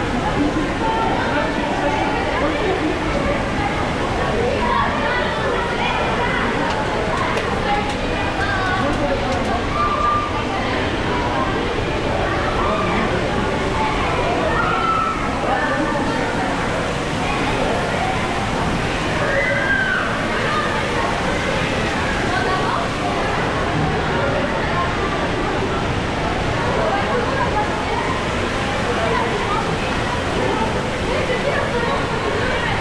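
Indoor waterpark hall ambience: the overlapping voices of many visitors over steady running and splashing water.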